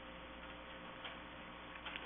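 Quiet meeting-room tone: a faint steady electrical hum and hiss, with one faint click about a second in.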